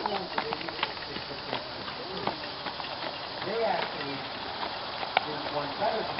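Indistinct voices of people talking at a distance, with scattered sharp clicks and taps throughout.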